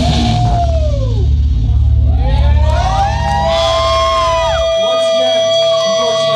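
Electric guitar and bass closing out a live rock song. The guitar plays sliding, bending notes over a low bass drone that cuts off about four and a half seconds in, while one held guitar note rings on.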